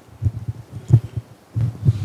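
Microphone handling noise: a series of dull, low thumps and bumps as a microphone is taken up and held before a question is asked.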